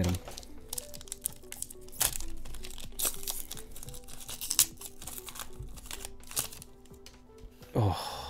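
The foil wrapper of a Pokémon card booster pack crinkles and tears as it is opened by hand, in many short crackles. Quiet background music with a simple stepping melody plays underneath.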